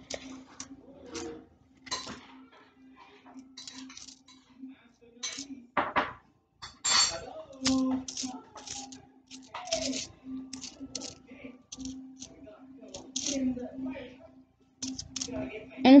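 Pennies clinking against each other as they are pushed around and sorted by hand on a cloth, in many small irregular clicks. A faint steady hum runs underneath.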